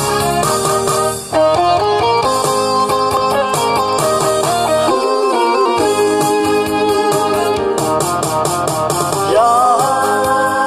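Instrumental intro of a Korean trot song played as a backing track over the stage speakers, the low end dropping out for a moment about five seconds in.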